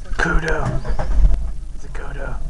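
Open safari vehicle driving along a dirt track, its engine and running gear a low, continuous rumble. A person's voice speaks briefly over it in the first second or so.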